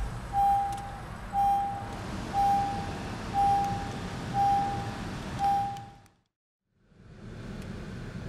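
2016 Honda Pilot's door-open warning chime: a single steady beep repeating about once a second, over the low running sound of the engine. The sound cuts off abruptly about six seconds in.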